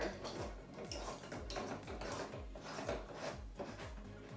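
Scattered plastic clicks and rubbing as a lamp socket is pressed and worked into a hole drilled in the top of a plastic storage tote. Quiet background music with a steady beat plays underneath.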